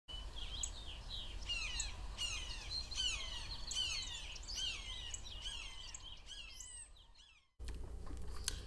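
Birdsong: several birds chirping in quick, overlapping whistled notes that mostly sweep downward in pitch, fading out about seven seconds in.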